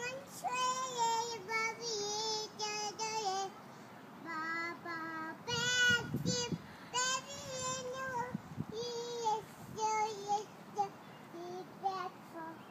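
A toddler singing a children's song in a high, small voice, in short phrases with brief breaks between them.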